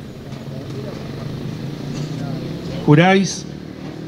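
Outdoor traffic noise, a car going by on a nearby street that swells and fades over about three seconds. A man's voice over a public-address microphone starts again about three seconds in.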